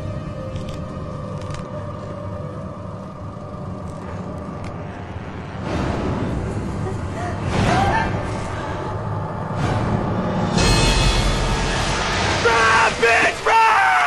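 Tense, scary film-score music with a low rumble, broken by a sudden loud hit about ten and a half seconds in; a high, wavering voice yells over it near the end.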